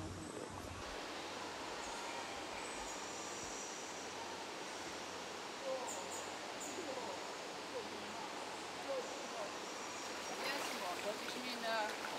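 Steady background hiss of water and ambience in an indoor tropical rainforest hall, with a few short high bird chirps around the middle. Indistinct voices come in and grow louder near the end.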